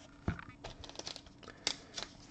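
Fingers handling a trading card, giving a few light clicks and rustles.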